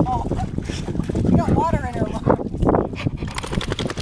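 Water splashing as a dog wades through shallow lake water, with a brief rising-and-falling voice about a second and a half in.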